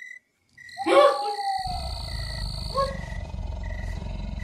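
A low, rumbling animal growl, a sound effect, begins about a second and a half in and carries on steadily, under short high chirps that repeat every half second or so.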